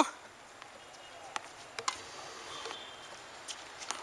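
Tennis ball being struck and bouncing: a few sharp, short knocks over a quiet background, the two loudest close together about a second and a half in, with fainter ones near the end.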